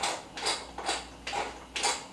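Kitchen tongs clicking and scraping against a stainless steel pan while a whole duck is turned in hot water, about five short sharp sounds, roughly two a second.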